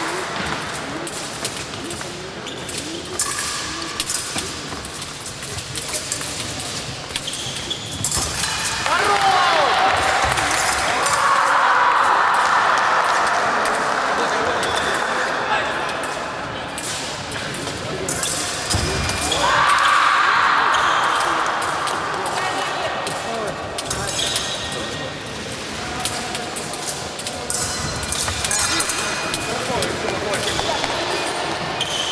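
Fencers' footwork on a sports-hall floor: shoes stamping and squeaking, with short clicks and thuds, echoing in the large hall, and voices calling out. Two louder stretches of noise, about ten and about twenty seconds in, last several seconds each.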